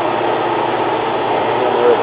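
Steady drone of engine-room machinery with a low hum, running evenly without knocks or changes.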